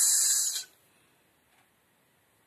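A woman's voice making a drawn-out hissing "sss", the phonics [s] sound, which stops after a little over half a second; then faint room tone.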